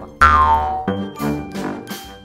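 A cartoon-style comedy sound effect: a sudden, loud tone sliding down in pitch about a quarter second in, running straight into a short musical sting that leads into a segment title card.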